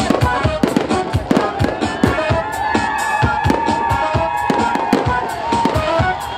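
Fireworks salute going off overhead: a rapid, irregular string of sharp bangs and crackles, several a second.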